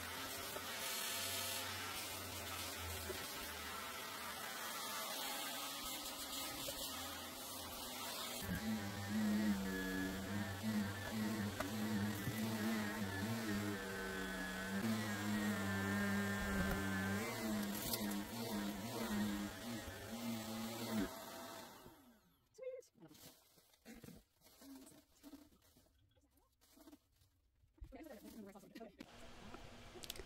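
Upright vacuum cleaner running on carpet, a steady hum whose note shifts a little as it is pushed about. It switches off about two-thirds of the way in, leaving only a few faint handling sounds.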